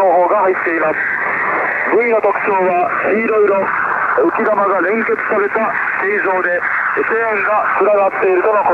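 A Japanese announcer's voice from the fisheries coastal radio station JFE, received on 8761 kHz upper sideband shortwave on a JRC NRD-545: continuous speech, thin and telephone-like with the highs cut off.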